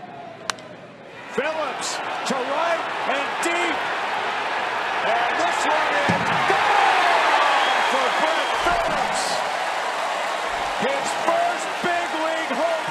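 A baseball bat cracks on a pitch about half a second in. A ballpark crowd then cheers, swelling to a peak mid-way as the home run carries out, with a voice over it.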